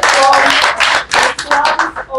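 A group of people clapping quickly and loudly, with voices over the claps. The clapping stops right at the end.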